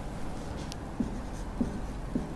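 A marker pen writing on a whiteboard: a few short squeaky strokes of the felt tip across the board.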